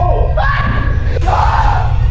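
Several people shouting and yelling in a commotion, over background music with a steady deep bass.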